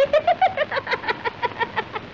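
A woman's high, rapid, trilling laugh on an old film soundtrack, about eight quick pulses a second on a nearly steady pitch. It is an acted madwoman's laugh.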